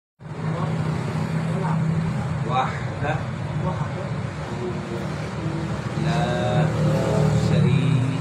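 A steady low hum from an unseen machine runs under the whole stretch. Voices talk over it, with short phrases near the middle and a longer one toward the end.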